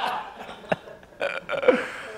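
A man laughing hard to himself: a few short, broken, breathy laughs.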